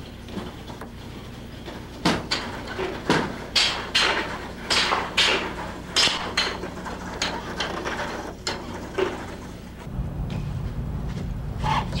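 Spring Flamingo, a bipedal walking robot, stepping along: an uneven run of sharp knocks and clacks from its feet and joint mechanisms, about two or three a second, over a steady low hum. The hum grows louder near the end.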